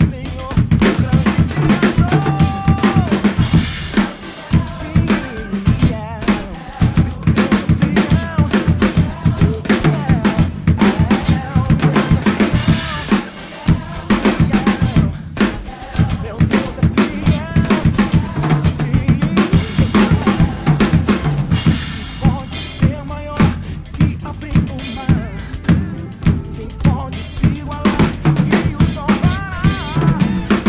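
Acoustic drum kit played continuously in a steady groove: kick drum and snare beats with cymbal hits ringing over them.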